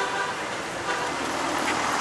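Outdoor road traffic noise as an even hiss. A car horn's steady tone cuts off just as it begins.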